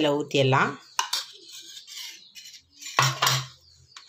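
A sharp clink of stainless steel on steel about a second in, then faint soft sounds of thick curd being poured and scraped from a steel bowl onto rice.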